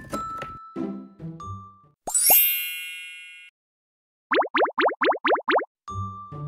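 Light children's-style background music for about two seconds, then cartoon sound effects: two quick rising plops and a bright chime that rings out and fades, a short gap of silence, then a rapid run of about eight rising boing-like zips.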